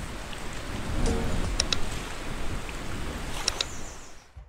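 Steady rushing water ambience, like waves or rain, with a few brief high chirps about a second and a half in and again near the end.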